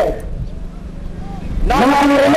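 A man's voice giving a speech pauses briefly between phrases. During the pause there is a low rumble with a faint steady hum, and the voice resumes near the end.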